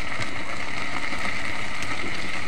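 Wood fire burning under a cooking pot in a mud hearth: a steady rushing noise with a few faint crackles.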